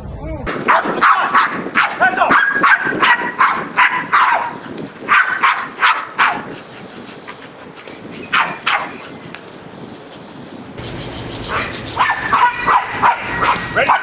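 Protection-trained dogs barking at a decoy in a bite suit: rapid, repeated strings of sharp barks. The barking thins out for a few seconds midway and picks up again near the end.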